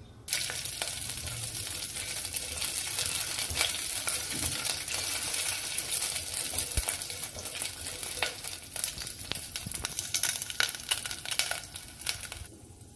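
A tempering of mustard seeds, split dals, peanuts, curry leaves and green chillies sizzling and crackling in hot oil in a stainless steel pot, stirred with a silicone spatula. The sizzle starts about a quarter second in and falls away just before the end.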